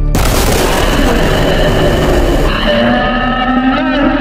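Animation sound effect: a sudden loud rushing noise, thinning after a couple of seconds into a rising whine of several tones.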